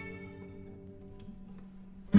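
Instrumental violin and guitar music at a soft pause between phrases: held notes die away quietly, with a couple of faint ticks near the middle.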